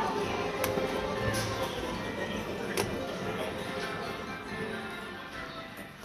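Store background music and people's voices, growing steadily quieter and dropping off sharply near the end. Two sharp clicks about half a second and three seconds in.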